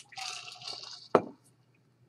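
A man sipping a drink from a stainless steel tumbler, a wet sucking sip lasting about a second, then a single sharp thud just after, the loudest sound, as the tumbler is set down.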